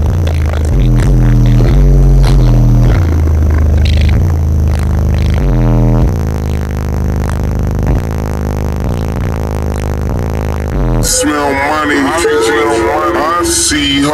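Bass-heavy music played loud through a car-audio subwoofer system and heard inside the cab: deep bass notes step from pitch to pitch. About eleven seconds in, the bass drops out and a rapped vocal takes over.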